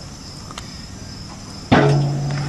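Crickets chirp steadily in the background. Near the end a Kubota compact tractor's diesel engine comes in suddenly and loudly and keeps running with a steady low hum.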